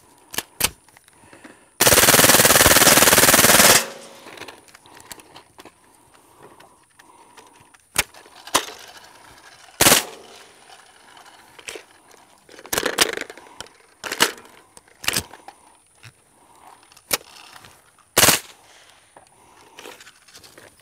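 Full-auto .22 LR AR conversion (CMMG upper, four-inch barrel) firing through a titanium KGMade Swarm 22 suppressor: one rapid burst of about two seconds, then scattered single sharp reports and clanks a second or more apart as the gun stops short of emptying its drum. The stoppages come from a heavily fouled chamber, which the shooters take for the cause of repeated failures to feed.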